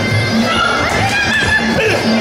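Muay Thai fight music: a wavering reed-pipe melody that glides up and down over a steady drum beat, about two beats a second.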